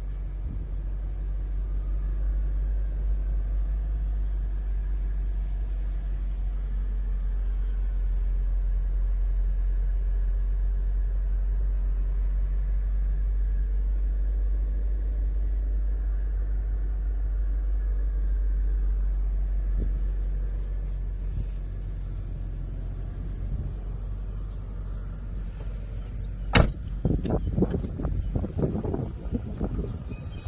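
BMW 8 Series (E31) engine idling steadily, a low even hum heard from inside the cabin. A single sharp knock comes near the end, like a car door shutting.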